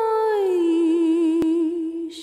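A woman's unaccompanied voice holding a long sung note. It slides down in pitch about half a second in, then holds the lower note with a slight waver. A single sharp click comes near the middle.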